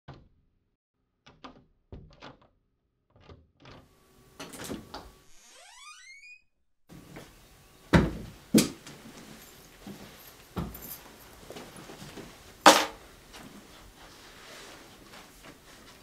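A door and people entering a small room: a few light clicks, a short rising squeak, then several sharp knocks and thuds over faint room tone, the loudest near the end.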